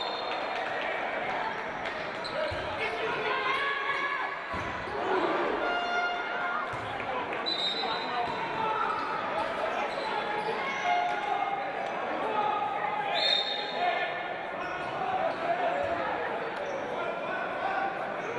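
Indoor handball play: the ball bouncing on the wooden court, short shoe squeaks, and players' and spectators' voices echoing in a large hall.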